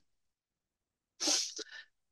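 A man's short, sharp intake of breath, heard over a video-call line, coming about a second in after a stretch of silence.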